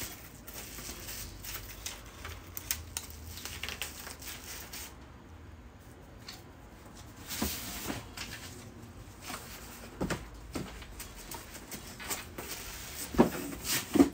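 Plastic and bubble-wrap packaging crinkling and rustling as it is handled, then a flat cardboard box being unfolded and set up, with a few sharp knocks of cardboard, the loudest near the end.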